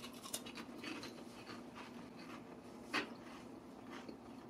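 A person chewing food with the mouth, faint small crackles and clicks, with one sharper click about three seconds in.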